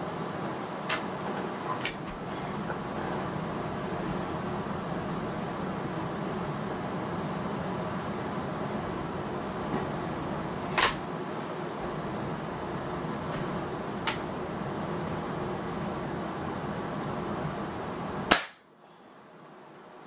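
A few light clicks while a Hatsan Striker 1000x .22 break-barrel spring-piston air rifle is cocked and loaded, then a single sharp shot from it near the end.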